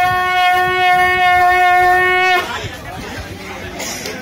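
Conch shell (shankha) blown in one long, steady note that cuts off sharply about two and a half seconds in, leaving street chatter.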